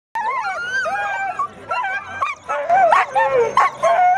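Several harnessed sled dogs yelping and whining at once: overlapping high cries that slide up and down in pitch.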